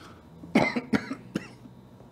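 A man coughing into a microphone, three short coughs about half a second apart.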